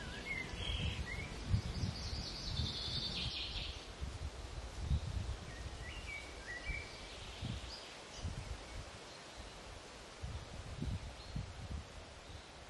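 Outdoor woodland ambience: small birds calling, with short whistled notes near the start, a buzzy trill a couple of seconds in and more chirps around the middle, over irregular low rumbles of wind on the microphone.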